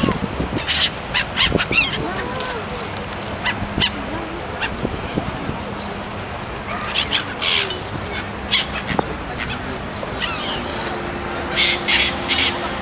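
Gulls calling in clusters of short squawks every few seconds, over a steady background noise with a faint low hum.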